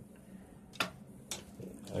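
Two short, sharp clicks about half a second apart, followed by a couple of fainter ticks, over quiet room tone.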